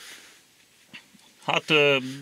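A man's voice: a short quiet pause, then about one and a half seconds in a long, drawn-out hesitation word "hát" ("well").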